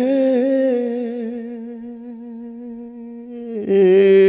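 Male blues singer holding a long sustained note with a slight vibrato, slowly fading, then louder again near the end.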